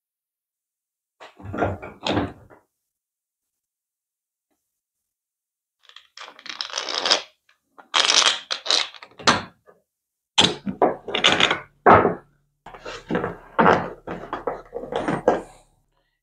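Wooden blocks and a threaded steel rod of a homemade bar clamp being handled and knocked together on a workbench. There are two thunks, then after a pause a long run of irregular knocks and clatters.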